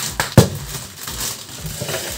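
Plastic Cheetos snack bag crinkling as it is pulled open by hand, with one sharp knock about half a second in.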